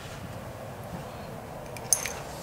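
Small parts of a Keihin PWK carburetor being handled by hand as the jet needle is fitted into the slide: a faint, steady hiss with one light, sharp click near the end.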